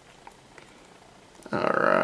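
Quiet room tone for about a second and a half, then a short voiced sound from a man, an untranscribed hum or word, near the end.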